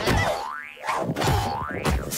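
Two cartoon 'boing' sound effects: each is a knock followed by a springy tone that rises in pitch, about a second apart. They fit the bouncing of puffed-up, balloon-like flotation suits.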